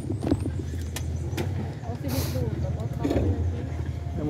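Motorcycle engine idling steadily, a low pulsing hum, with a few light clicks and a brief hiss about two seconds in.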